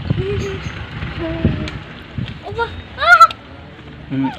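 A cat gives one short, loud meow about three seconds in, the pitch rising and then falling.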